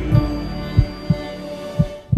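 Intro music of held synth tones, with a deep heartbeat sound effect thumping in lub-dub pairs, about one pair a second.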